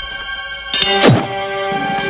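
Cartoon score with a sudden thunk impact effect about three quarters of a second in, followed by a quick falling swoop sound effect, as the giant is struck and staggers.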